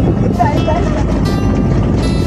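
Small boat's engine running, with a steady low rumble of engine, water and wind noise. Voices sound over it.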